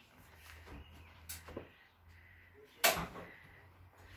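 A couple of light clicks, then one sharp knock about three seconds in, over a faint steady hum.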